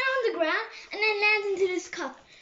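A child singing a wordless tune to himself, with two long held notes, the second lasting most of a second.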